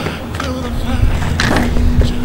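Wheeled suitcase rolled a short way over concrete paving, a low rumble from its wheels that grows stronger in the second half, with a short knock about 1.4 s in, over soft background music.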